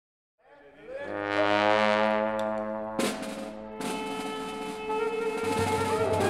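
Balkan brass band of tuba, trombone, trumpet, saxophone and clarinet playing a long held chord that swells in from silence. Two sharp percussion hits come about three seconds in, and a deeper bass line joins near the end.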